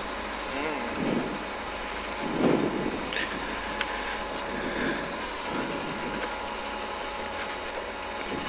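Rally car's engine idling steadily while the car stands still, heard from inside the cabin, with a few faint murmured words.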